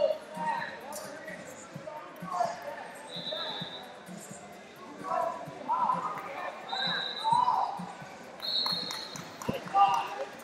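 Wrestling shoes squeaking on the mat as two wrestlers hand-fight and shuffle on their feet, three short high squeaks among them, with voices calling out in a large echoing hall.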